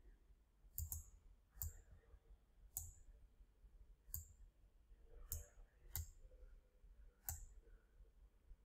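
Computer mouse button clicking: about seven faint, separate clicks at irregular intervals while shapes are picked and dragged.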